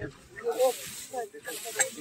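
A soft hissing rustle lasting about a second, ending in a sharp click, under brief murmured voice sounds.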